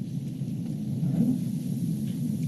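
Low, steady rumble of room noise picked up by the meeting room's microphones.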